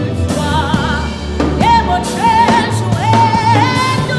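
A woman singing a gospel worship song into a microphone, holding long notes with vibrato, over instrumental accompaniment with a steady bass line.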